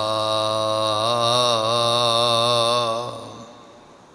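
A man's voice holding the long final note of a chanted line of Gurbani, with a slow vibrato, fading away about three seconds in.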